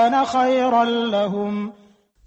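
A male reciter chanting the Quran in Arabic, a slow melodic line of long held notes that step in pitch and fades away about 1.7 s in.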